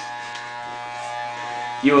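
Electric hair clippers running with a steady buzz.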